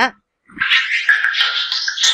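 A mobile phone going off with an alert sound, starting about half a second in and continuing past the end.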